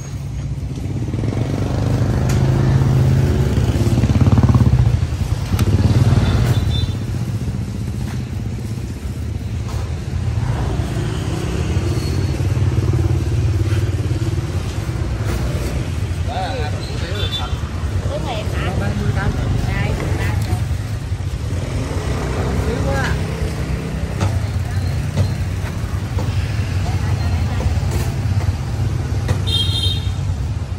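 Street traffic of motorbikes passing close by, a steady low engine rumble that is loudest a few seconds in, over a background of people talking.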